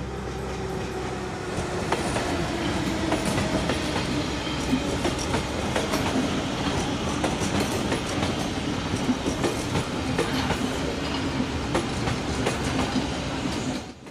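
Berlin S-Bahn class 485 electric train running past close by, its wheels clattering over the rail joints with a low hum under the rattle. The sound cuts off suddenly at the end.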